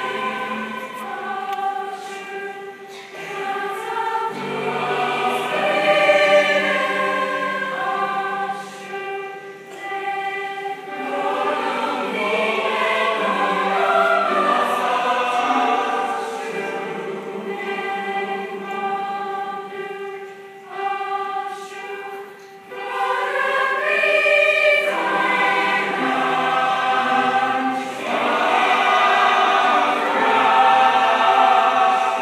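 A large mixed school choir singing with grand piano accompaniment. The choir holds sustained notes in several voices at once, with a few short breaks between phrases.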